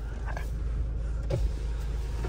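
Steady low hum of an SUV engine idling, heard from inside a stationary Mahindra Scorpio-N's cabin, with a faint brief knock about one and a half seconds in.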